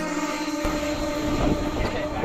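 Background music fading out. About half a second in, a low wind rumble starts buffeting the microphone in a strong breeze.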